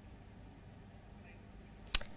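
Faint background hiss, then near the end a single short, sharp transition sound effect: a swoosh-hit that marks the cut to a news graphic.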